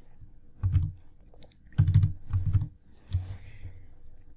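A few keystrokes on a computer keyboard: about four separate taps, heavy in the low end.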